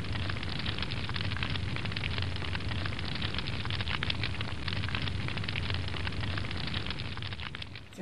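Small open wood fire of sticks burning in a ring of stones: a dense, steady crackle of small sharp pops over the rush of the flames and a low rumble.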